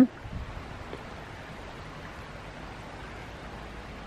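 Steady outdoor background hiss with no distinct events: plain open-air ambience among trees.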